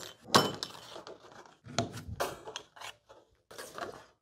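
Hand snips and a galvanized steel sheet clinking and rattling as a corner notch is finished and the snips are set down: one sharp metallic clink just after the start, then a few fainter clicks and rattles as the sheet is shifted.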